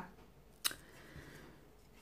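A single light click about two-thirds of a second in, as the plastic nail-buffer holder is set down, followed by faint handling rustle.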